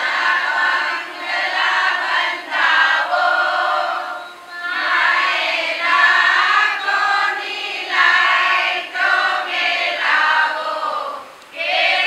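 A group of women singing together in unison, in phrases with short breaks for breath about four seconds in and again near the end.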